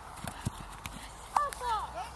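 Children running on grass, with a few soft footfall thuds in the first half-second. In the second half comes a child's short, high-pitched shout, falling in pitch.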